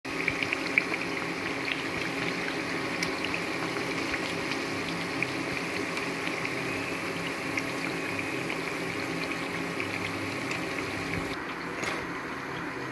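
Lauki (bottle-gourd) puris deep-frying in hot oil in a kadai: a steady sizzle with scattered pops and crackles over a faint low hum. The sizzle drops away near the end.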